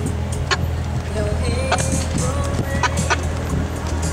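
Corvette Z06's V8 engine running low and steady as the car creeps down a steep, winding street, with a few short sharp clicks over the rumble.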